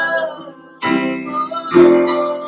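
Acoustic guitar strumming chords: a held chord dies away, then a fresh strum comes in about a second in and a louder one near the end.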